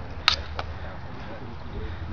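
Aluminum bolo trainers striking each other once with a sharp clack, followed by a fainter second tap, over faint voices in the open air.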